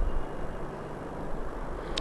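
Background noise in a pause between spoken sentences: a steady low hum under a faint hiss, picked up through a speaker's microphone, with a brief click near the end.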